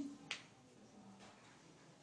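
A single short, sharp click about a third of a second in, right after the last syllable of speech, then near silence: faint room tone.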